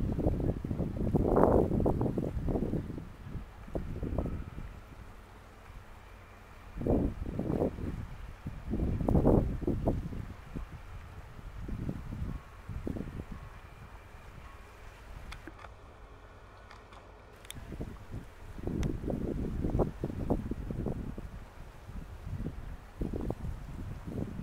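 Wind buffeting the microphone in irregular low rumbling gusts, with quieter lulls between them.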